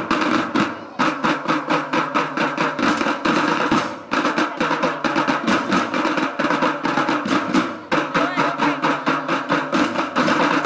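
School drum band playing: snare, tenor and bass drums beating a fast, dense rhythm with a held melody over it, easing briefly between phrases about a second, four seconds and eight seconds in.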